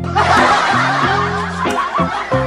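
A burst of laughter that starts suddenly just after the start and keeps going, over background music with steady low notes.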